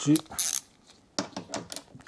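Hand ratchet driver clicking as it turns a door striker bolt: a quick run of about five clicks in the second half, after a short rustle of handling.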